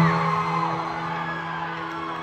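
Live concert music over the sound system: one sustained low note that slowly fades, with fans whooping and screaming in the crowd.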